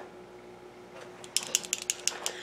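A small tube of LipSense liquid lip color being shaken by hand, rattling in a quick run of sharp clicks that starts about a second and a half in. The shaking mixes the color particles back into the alcohol they are suspended in.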